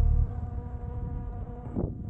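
Veteran Sherman S electric unicycle's hub motor giving a steady buzzing whine at cruising speed over low wind and tyre rumble. The last of the background music dies away right at the start.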